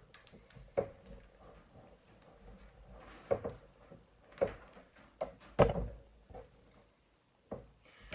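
A clothes iron pushed back and forth over fabric on a small tabletop ironing board, a soft rubbing broken by about five dull knocks as the iron is moved about and stood on the wooden table; the loudest knock comes a little past halfway.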